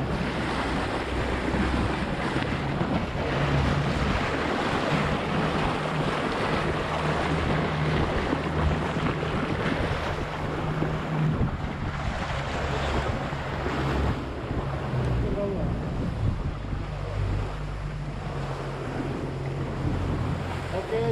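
Small motorboat under way: its engine runs steadily, with water rushing and splashing along the hull and wind buffeting the microphone.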